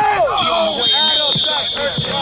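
Voices and background music, with a steady high tone that comes in about half a second in and holds for about two seconds.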